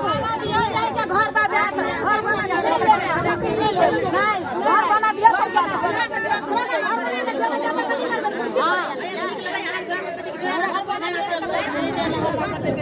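Several women talking loudly over one another in a heated argument, a dense babble of overlapping voices.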